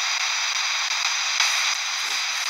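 Steady static hiss with a few faint, steady high tones over it.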